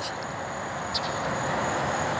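Steady background hiss with a faint, high, steady whine running through it, and one faint click about a second in.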